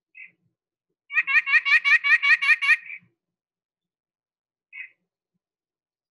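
White-breasted nuthatch calling: a quick run of about ten nasal 'yank' notes, about six a second, with a single note just before the run and another about two seconds after it.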